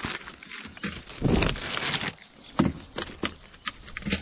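Plastic carrier bag and food wrappers rustling and crinkling in handling, in several irregular bursts, the longest about a second in.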